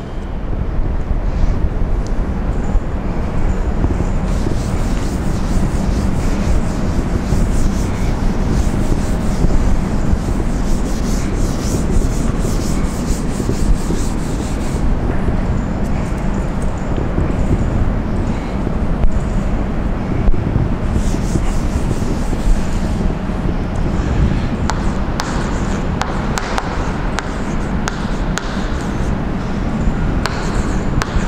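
Blackboard duster rubbing back and forth across a chalkboard, wiping it clean in a long, continuous scrubbing. Near the end, chalk writing on the board.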